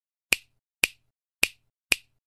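Four sharp, snap-like clicks about half a second apart: an intro sound effect timed to the title letters appearing.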